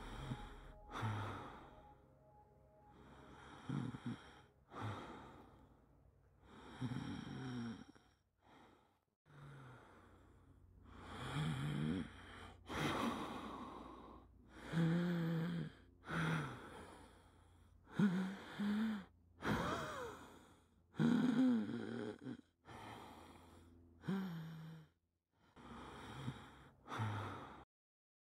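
A person breathing heavily and laboriously: a long run of gasping breaths, one every second or two, some of them voiced, like someone short of air.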